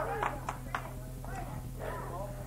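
Faint, short bits of voice with a few clicks, over a steady low electrical hum.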